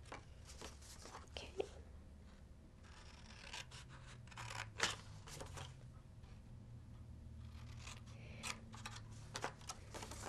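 Small scissors snipping through pattern paper in short, irregular cuts, trimming the corner squares off along score lines.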